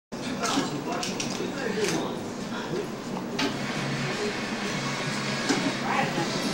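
Indistinct voices talking in a room, with a few sharp clicks and knocks scattered through.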